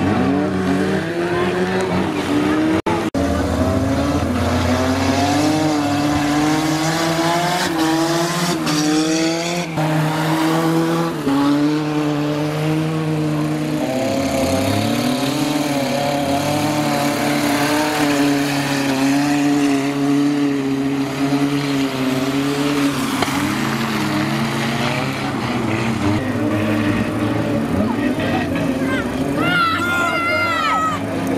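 Engines of several small hatchback race cars revving and labouring on a muddy dirt track, their pitch rising and falling as the drivers work the throttle. The sound drops out briefly about three seconds in.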